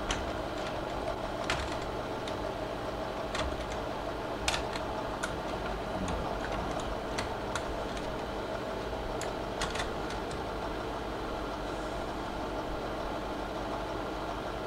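Home-movie projector running: a steady mechanical drone of motor and film transport, with scattered sharp clicks.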